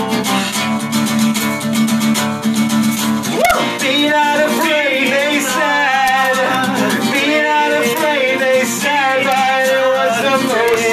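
A band playing a song live: guitar holding a chord, then a rising glide about three and a half seconds in and wavering melody lines after it, with no words sung.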